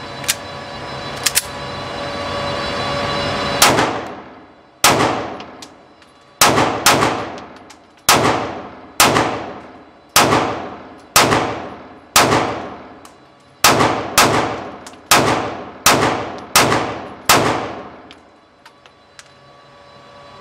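A Springfield Armory Hellcat RDP 9mm pistol with a compensator is fired about fifteen times at roughly one shot a second, emptying its 15-round magazine without a stoppage. Each shot rings on in the long echo of an indoor range. Two light clicks of handling come before the first shot.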